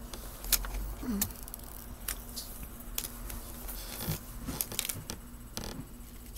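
Scattered light clicks, taps and rustles of hands handling small paper or cardboard pieces on a cardboard stand, over a faint steady low hum.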